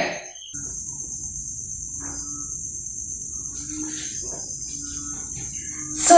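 Cricket trilling steadily at a high pitch, one unbroken tone that comes in about half a second in, over faint background noise.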